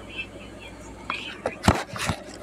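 Faint whispering, then several sharp knocks and thumps in the second second, the loudest near the end, as the phone is handled and swung about.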